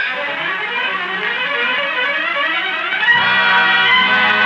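Orchestra with brass to the fore striking up a patriotic march, heard in a 1943 radio broadcast recording. It grows fuller and louder about three seconds in as lower parts enter.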